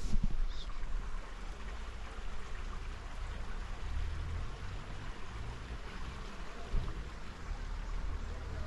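Steady hiss of a forest creek running, with a low rumble underneath and a couple of brief bumps, one just after the start and one about seven seconds in.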